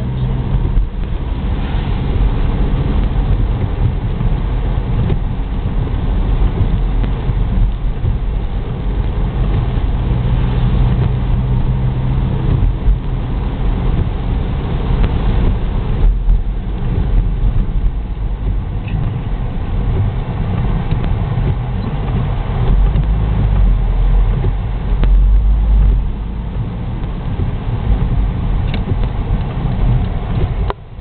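A car's engine and tyre noise on a wet road, heard from inside the cabin as a steady rumble. The low rumble grows louder for a few seconds about three-quarters of the way through.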